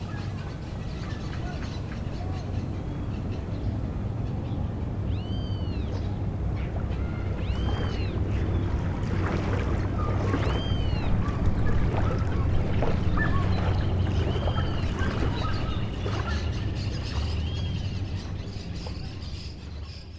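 Outdoor shoreline ambience: a steady low rumble with small waves lapping on a pebble shore, and about half a dozen short arching bird calls over it. It fades out near the end.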